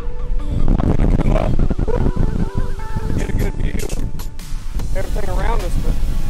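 Strong wind buffeting the camera microphone, a loud, steady low rumble, with a man's voice and background music partly heard over it.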